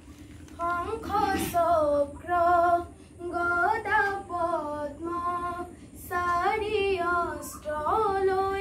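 A group of children singing an Assamese diha naam, a devotional group chant, together in unison: short phrases of held notes with brief pauses between them.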